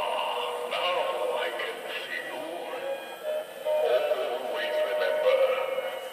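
Animatronic genie head in a crystal-ball prop playing its recorded voice and music through its small built-in speaker. The sound is thin, with almost no bass.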